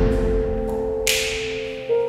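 Instrumental passage of a song: a held chord over a low bass that fades, with one bright percussive hit about halfway through.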